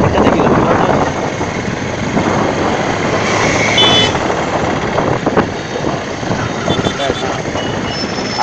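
Road and traffic noise from a moving vehicle on a busy road, loudest in the first second and then easing off. A short, high-pitched horn beep sounds a little over three seconds in, and fainter beeps follow near the end.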